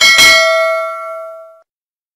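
Notification-bell sound effect: a click, then a bright bell ding whose tones ring on and fade out over about a second and a half.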